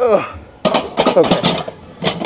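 A loaded barbell set down into the metal hooks of an incline bench rack: a cluster of sharp metallic clanks and rattles over about a second. It is preceded by a falling, strained groan from the lifter as the set ends.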